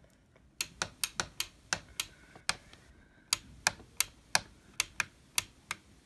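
A light switch flicked on and off over and over, flickering the room lights: a quick series of sharp clicks, about three a second, with a short gap near the middle.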